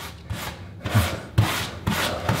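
Rubber grout float scraping and pushing wet grout across tile joints in about four short strokes.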